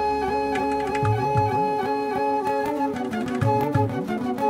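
Instrumental background music: slow held notes with plucked strings.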